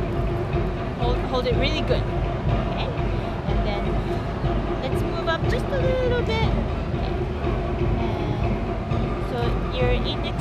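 Background chatter of many people in a large hall over a steady low rumble, with faint indistinct voices coming and going.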